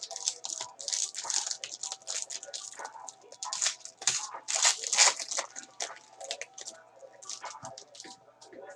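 Foil wrapper of a football trading-card pack being torn open and crinkled in gloved hands: a quick, irregular run of crackles, loudest around four to five seconds in.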